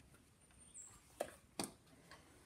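Two faint, short metallic clicks a little under half a second apart, from small steel parts of a Victor V phonograph's governor being handled as its spring is popped into place; otherwise quiet.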